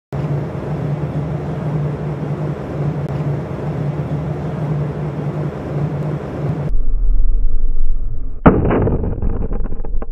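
A steady hum with rushing noise, then a heavy low rumble and one sharp blast about eight and a half seconds in, trailing off into crackling: an explosion from a target hit in laser weapon test footage.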